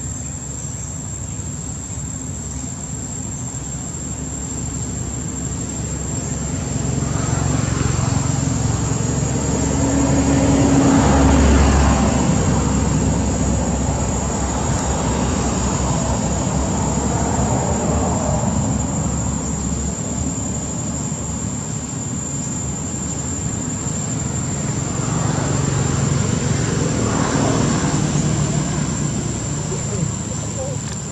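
Road vehicles passing: a low rumble and rush that swells and fades, loudest about ten seconds in and again near the end, with a thin steady high whine throughout.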